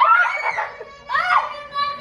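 Young children squealing and shrieking in high voices, two calls, the second held long, an excited, half-scared reaction to a toad hopping on the floor.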